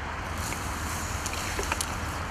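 Water splashing and sloshing as a hooked rainbow trout is scooped out of the weed in a landing net, with a few short sharp splashes in the second half. A steady low rumble runs underneath.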